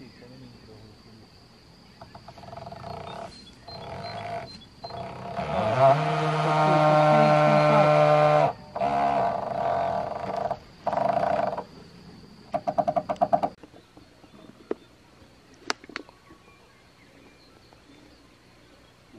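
Power drill driving screws into a wooden deck frame, running in several bursts. On the longest burst it speeds up to a steady whine for about three seconds, and near the end it gives a short, rapid stuttering burst.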